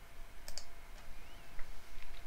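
A computer mouse click about half a second in, followed by a fainter click.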